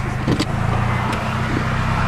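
Car engine running with steady road noise, heard from inside a moving car: an even low hum with a rushing hiss over it.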